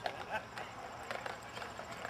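Hoofbeats of a draft horse walking on the hard towpath while towing a canal barge: a string of sharp, separate clip-clops, with faint voices behind.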